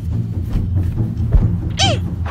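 A short, high, cat-like cry that rises briefly and then falls in pitch, near the end, over a steady low background drone. A dull low thud comes a little before it.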